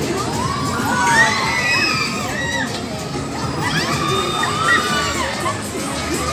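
Children shouting and squealing over the steady hubbub of a fairground crowd, with bursts of high shouts about a second in and again around four to five seconds in.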